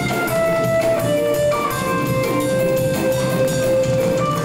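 Live jam band playing an instrumental section on guitar and drum kit, with long held notes over the steady drums.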